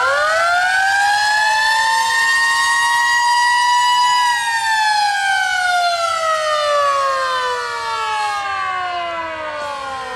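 Mechanical siren winding up, holding a steady wail for about four seconds, then slowly winding down in pitch as it coasts.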